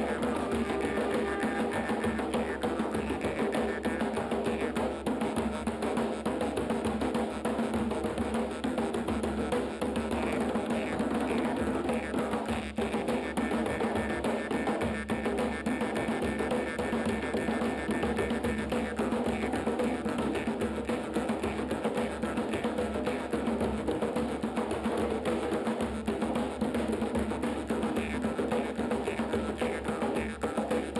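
Three djembes played together in a continuous hand-drum rhythm, with a jaw harp (vargan) droning steadily over the drums.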